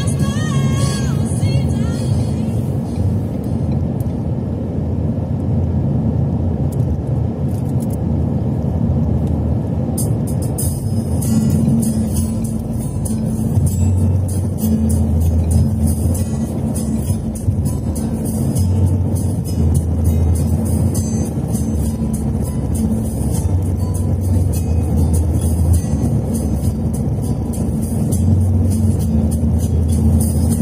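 Steady road and tyre noise inside a car at highway speed, with music playing over it; the music's low bass notes come and go in blocks.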